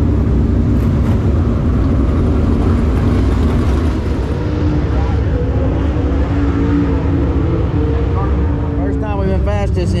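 Dirt late model race car V8 engines running loud and steady, a deep rumble with a held engine tone through the middle; a voice begins near the end.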